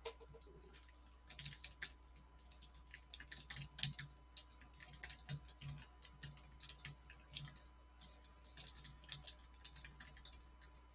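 Typing on a computer keyboard: a quick, irregular run of key clicks that starts about a second in and pauses briefly around eight seconds, over a steady low electrical hum.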